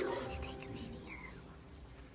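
Soft whispering in the room, with a quiet chord of several notes ringing out and fading over about a second and a half.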